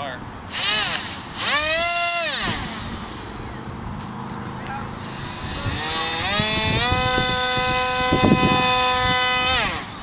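Electric motor of a radio-controlled F-22 model jet run up while held in the hand: a short whine rising and falling about a second and a half in, then a whine climbing in steps from about six seconds, held steady for about three seconds and cut off suddenly near the end. The run-up tests a freshly spliced motor wire.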